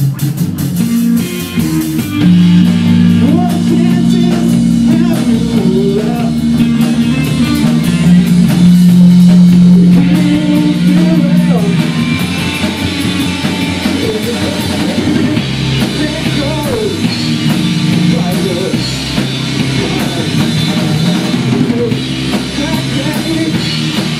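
Live rock band playing: electric guitars and bass holding loud sustained chords over a drum kit. The full band comes in louder about two seconds in.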